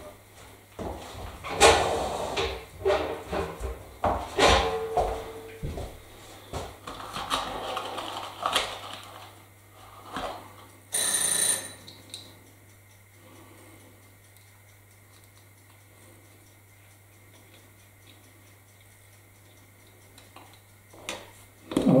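Small parts of a model railway overhead-line mast being handled and fitted by hand: irregular clicks, taps and rustling over the first ten seconds. About eleven seconds in, a high ringing tone lasts about a second, followed by a stretch with only a steady low hum.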